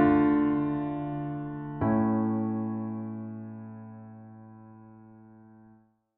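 Piano chords ending a harmonic progression in A major: one chord fading, then about two seconds in the final A major tonic chord, struck and left to ring as it fades, cut off just before the end.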